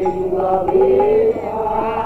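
Devotional kirtan singing: a voice holds long, slightly wavering chanted notes.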